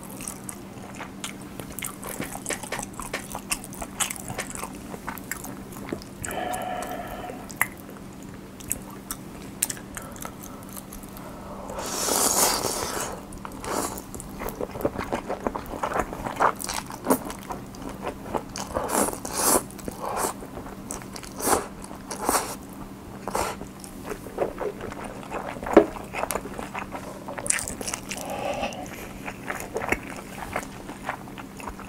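Close-miked eating sounds: wet chewing and mouth smacks, many short clicks, as a person chews pork trotter and cold ramen noodles. About twelve seconds in there is a longer noisy slurp of noodles.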